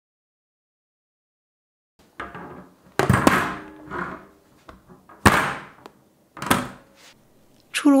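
About two seconds of near silence, then a series of knocks with a short metallic ring, three of them loud: a square metal cake pan being set down and handled on a wire cooling rack.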